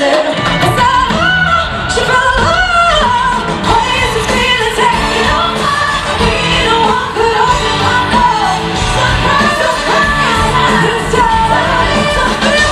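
Live pop-rock band playing over amplified speakers, with a brass section. A woman sings long, bending, held notes over it.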